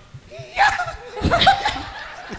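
People laughing in short broken bursts, about half a second and a second and a half in.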